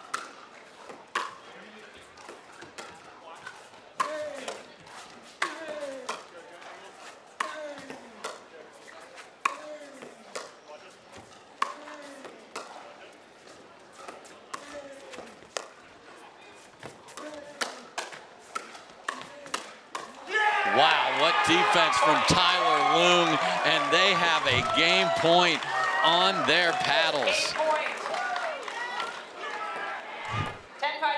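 Pickleball rally: sharp pops of paddles hitting the plastic ball about once a second, with sneakers squeaking on the court between shots. About twenty seconds in, the point ends and the crowd breaks into loud cheering and applause for several seconds.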